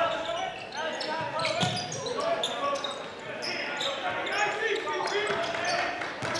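Basketball game sounds in a large gym: a basketball being dribbled on a hardwood court, the voices of players and the crowd, and short high-pitched sneaker squeaks.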